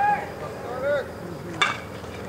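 A single sharp crack of a bat hitting a pitched baseball, about a second and a half in.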